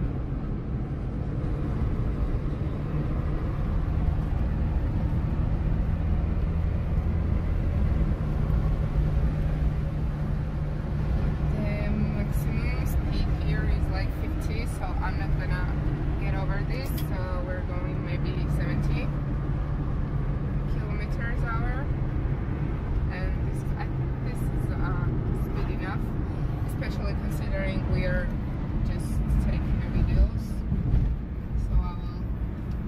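Nissan March hatchback driving along a paved road, heard from inside the cabin: a steady low drone of engine and tyres. From about twelve seconds in, short voice-like sounds come and go over it.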